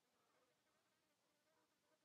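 Near silence: a pause with no audible sound.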